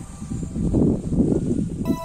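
Loud, uneven rumbling noise on a handheld phone's microphone for about a second and a half, with background music cutting back in near the end.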